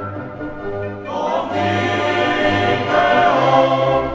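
Choir singing sacred choral music with orchestra, in sustained chords that swell about a second in into a fuller, louder passage.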